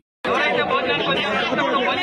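A crowd of men talking over one another, many voices at once, starting after a brief moment of silence.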